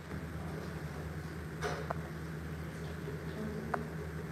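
Steady low hum of a room's background, with two brief faint clicks, one near the middle and one near the end.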